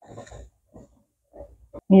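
Faint, irregular bubbling and sputtering from rice simmering in a covered pan on a low flame, heard as a short stretch at first and then as scattered little pops.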